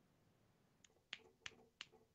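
About four quick finger snaps, roughly a third of a second apart, starting just under a second in: someone snapping while trying to recall a name.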